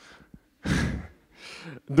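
A man breathing close into a handheld microphone: one loud sighing exhale about halfway through, then a fainter breath shortly before he speaks again.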